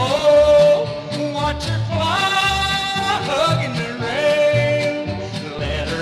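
Country band instrumental passage: a lead instrument slides up into a long held note three times, about every two seconds, over a steady bass and rhythm beat. It carries the added echo of Capitol's Duophonic fake stereo.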